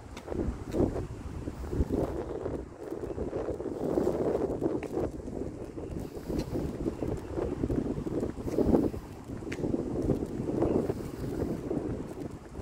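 Wind buffeting the microphone: a rumbling noise that swells and fades in irregular gusts.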